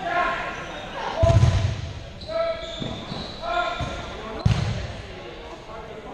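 Voices calling out, echoing in a gymnasium, with two loud thumps of a dodgeball hitting the wooden gym floor, about a second in and again past the middle.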